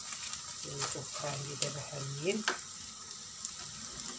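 Diced onions sizzling in oil in a frying pan, with a few sharp knocks of a wooden spatula against the pan.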